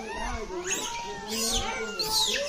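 Several people's voices in the background, with a few shrill, high, wavering cries over them around the middle.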